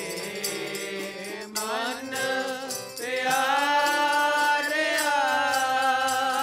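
Sikh Gurbani kirtan: a man singing over a held harmonium drone, with a quick steady tabla beat. The voice grows louder about three seconds in.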